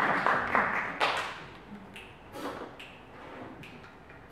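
Hall room noise: a short noisy burst in about the first second, then scattered light taps and clicks as the band waits to start.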